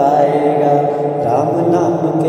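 Bhajan singing: a voice holding long, wavering notes of a devotional Hindi song, with musical accompaniment beneath it.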